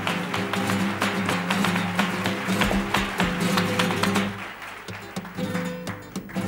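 Flamenco-style instrumental music: guitar with rhythmic hand-clapping (palmas) and sharp percussive clicks over it. The music thins out and drops in level about four seconds in.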